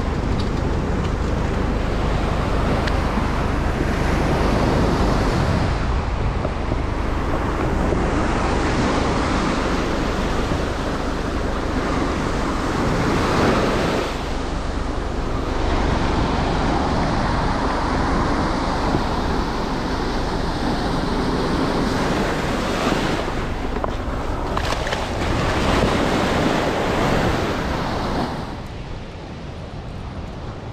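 Ocean surf breaking and washing up a sandy beach: a steady rush of water that swells several times, with wind buffeting the microphone. It drops quieter near the end.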